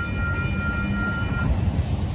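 Union Pacific auto-rack freight train rolling past, a steady low rumble. A high, steady ringing tone sounds over it and cuts off about a second and a half in.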